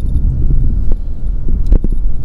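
Low road and engine rumble inside a moving car's cabin, with a few sharp knocks, two of them close together near the end.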